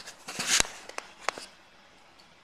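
A short crinkling rustle about half a second in, followed by a few sharp clicks, from the aluminium-foil-wrapped ribbon cable and its tape being handled.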